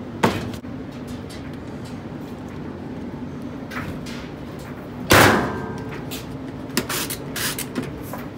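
Lid of a top-loading washing machine slammed shut about five seconds in, a loud bang with a short metallic ring, over a steady machine hum. A sharp knock comes just after the start and a few lighter clicks and knocks follow the slam.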